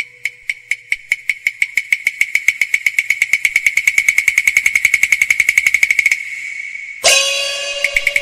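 High-pitched percussion in a Cantonese opera accompaniment, struck in an accelerating roll: single strokes about two a second speed up into a fast, even roll that stops about six seconds in, leaving a brief ringing tone. Near the end the full instrumental ensemble comes in loudly.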